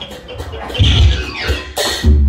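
Music from the stage band: drum thumps and a rising tone, then a sharp cymbal-like crash near the end, marking a hit in a staged fight.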